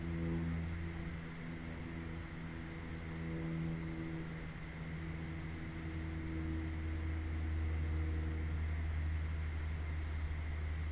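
Steady low hum and hiss, with faint held tones that shift every second or two above it.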